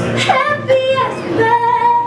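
A woman singing a live song with guitar accompaniment, her voice sliding between notes.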